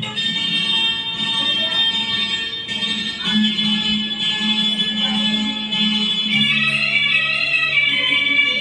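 Instrumental karaoke backing track of a golden-era film song, with sustained high notes held over a bass line that moves between notes.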